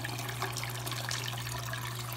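Water pouring steadily from a gallon jug through a plastic funnel into a latex balloon, trickling and splashing as the balloon fills.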